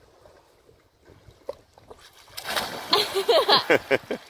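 Quiet lapping water, then from about two seconds in loud splashing as a swimmer thrashes through the water, with laughter over it near the end.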